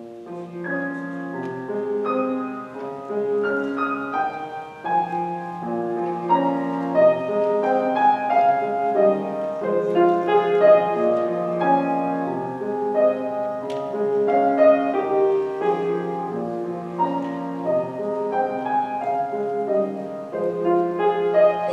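Piano playing a slow introduction of held chords and melody, beginning suddenly out of silence right at the start.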